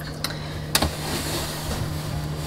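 Clear plastic refrigerator bin being handled and slid out, with a faint click and then a sharper plastic click just under a second in, followed by a soft sliding hiss; a steady low hum underneath.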